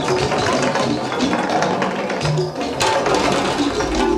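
Live improvised ensemble music: a dense, busy clatter of rapid percussive clicks and taps over scattered short pitched notes, with a brief low held note about halfway through.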